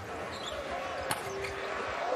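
Basketball dribbled on a hardwood arena court, with two sharp bounces, one at the start and one about a second in, over steady crowd noise.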